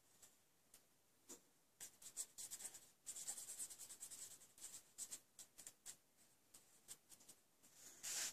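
Faint, irregular strokes of a brush-tip glitter pen (Wink of Stella) rubbing over stamped cardstock as it is brushed across the flowers.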